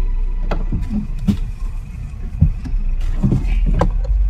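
Inside a car: the passenger door is opened and a person climbs into the seat, a series of knocks and thumps with some rustling, over a low steady rumble of the car.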